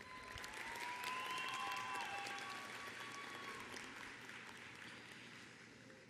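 Audience applauding in a large hall, swelling about a second in and slowly fading out, with a few long high calls over the clapping.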